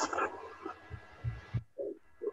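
A man's voice over a video call trails off, followed by a few dull low thumps and short fragments of voice.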